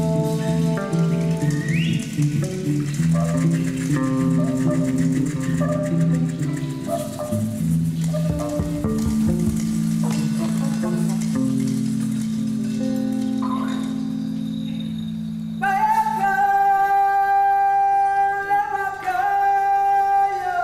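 Live band playing marimbas, guitar and horn, with many low notes sounding together. Near the end a single high note comes in and is held.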